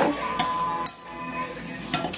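Dishes and serving utensils clink a few times as food is put onto a plate, with background music playing.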